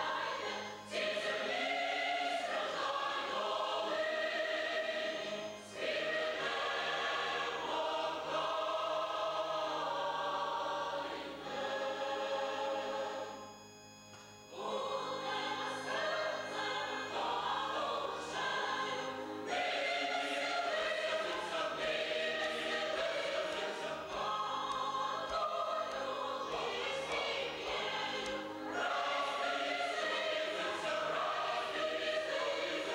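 Large mixed choir of women's and men's voices singing a Christian hymn in long held phrases, with a brief pause about halfway through.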